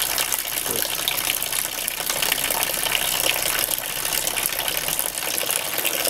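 Steady splashing of a thin water stream falling from a hose into a trough below.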